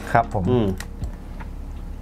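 A few light clicks and taps from hands handling the internals of an opened MacBook Pro laptop.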